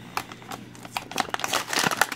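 Clear plastic blister pack of a carded die-cast toy car crinkling and crackling as fingers pry it away from its cardboard backing. It is a fast, irregular run of small clicks that grows busier and louder toward the end.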